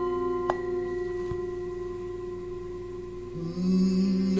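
A bowl-shaped bell struck about half a second in, its pure tone ringing on steadily with its overtones. Near the end a low voice begins chanting.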